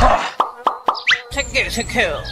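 Three short, quick blips sliding up in pitch, about a quarter second apart, then a higher rising glide, with a voice in the second half.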